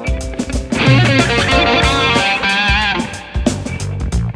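Fender Custom Shop Roasted 1961 Stratocaster, a single-coil electric guitar, played as a lead line: picked notes, then held notes bent and shaken with vibrato in the middle, then picking again near the end.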